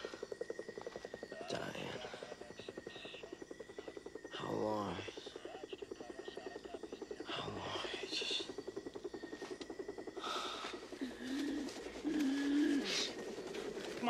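Helicopter rotor beating in a rapid, even rhythm. Short groans and gasps from a wounded man come and go over it.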